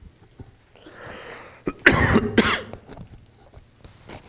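A man coughs twice in quick succession, close to the microphone, after a short breath in.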